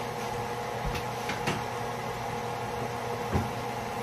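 A few light knocks and clatters from kitchen cupboards and containers being handled, the loudest a little after three seconds in, over a steady kitchen hum.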